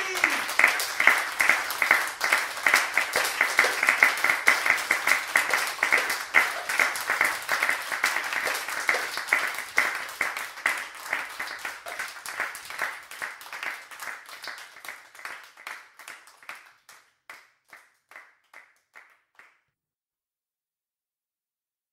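Audience applauding after a live song, a dense patter of hand claps. The applause thins out after about twelve seconds to a few last scattered claps, then stops just before the end.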